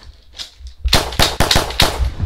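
A rapid burst of about five gunshots within one second, starting about a second in.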